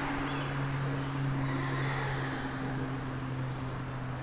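A steady low hum, like a distant motor running, over a faint outdoor background.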